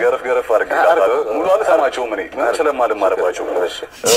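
Speech only: a voice talking continuously in a language the recogniser did not transcribe, with nothing else standing out.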